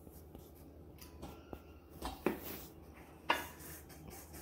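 A wooden spoon stirring dry oatmeal mix in a stainless steel bowl: quiet scraping with a few light knocks against the metal, the sharpest a little after two seconds in and again a little after three seconds in.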